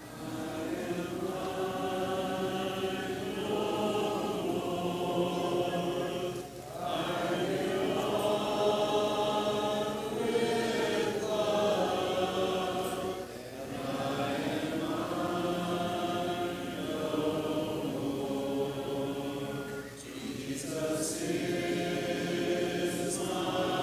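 Congregation singing a hymn a cappella, in long held phrases with short breaks between them about every seven seconds.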